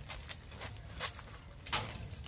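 Sneaker footsteps and scuffs on concrete, a quick, irregular run of light steps and shuffles as a three-step quarterback drop-back.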